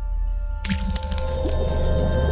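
Logo sting sound design: a low steady rumble and held tones, then a liquid splat about two-thirds of a second in, as an ink drop hits and spreads.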